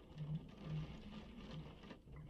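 Faint rain pattering, with a few short, soft low hums over it.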